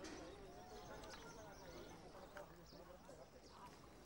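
Faint ambience of distant voices talking, with a few light knocks now and then.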